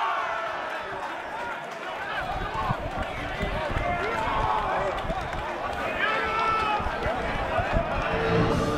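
Shouts and calls of footballers and spectators at an outdoor amateur football match, carried over open air as the attack builds toward goal.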